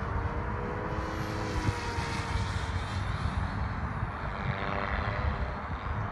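Distant RC 3D helicopter's rotor and motor whine, steady at first, fading about two and a half seconds in and coming back near the end. Wind buffets the microphone throughout.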